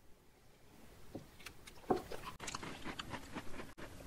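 Faint, scattered small clicks and mouth sounds of people sipping red wine and nibbling a thin chocolate cookie, the loudest click about two seconds in.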